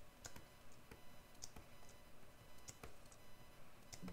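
Faint, irregular clicking at a computer desk: about ten sharp clicks of a pointing device, mouse or pen tablet, as bumps are dabbed onto a digital sculpture one stroke at a time.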